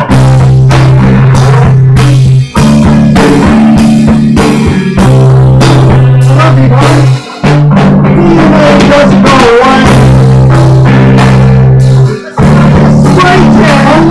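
A rock band jamming loud on bass guitar and drums. The bass holds long low notes under steady drum hits, and the band stops for a brief gap about every five seconds before coming back in.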